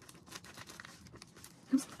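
Plastic mailer bag crinkling and rustling in the hands as scissors are worked at its edge: a run of faint short crackles.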